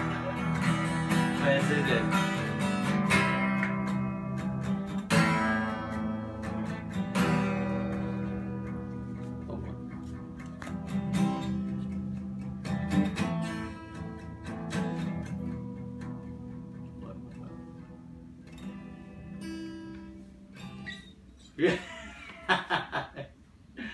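Acoustic guitar playing strummed chords, each left to ring, growing slowly quieter as the song winds down, with a man's laugh at the very end.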